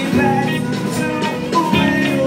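Live band music from the stage: keyboard and drum kit playing under a singer's amplified voice.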